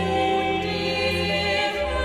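A choir sings slow, held chords in a sacred oratorio over sustained low bass notes. The bass moves to a new, lower note near the end.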